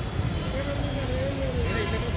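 Street ambience: a steady traffic rumble with a crowd's voices talking, and a brief hiss near the end.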